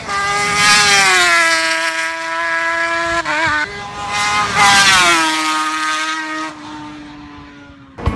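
Suter MMX-500 V4 two-stroke racing motorcycle under hard acceleration, its high engine note rising and then sliding down, with a brief stutter about three seconds in. It rises again to its loudest near five seconds, then falls in pitch and fades as the bike goes past and away.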